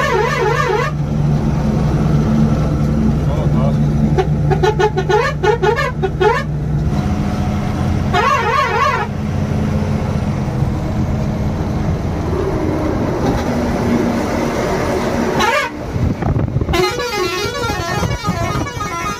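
A truck engine drones steadily, heard from inside the cab. A warbling, trilling horn sounds over it in short bursts several times: at the start, a few times in the middle and again near the end.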